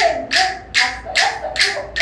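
Pair of wooden rhythm sticks clacked together in a steady beat, about two and a half strikes a second.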